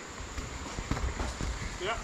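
Footsteps on a rocky dirt trail: a few uneven thuds and short knocks as a person walks past close by.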